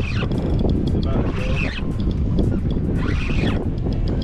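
Steady wind rumble on the microphone and boat noise on the open sea, with faint voices twice.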